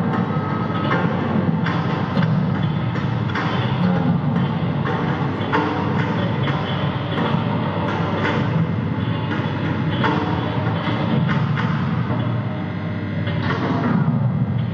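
Experimental live music: a dense, continuous low noise bed with irregular sharp knocks roughly every half second to a second.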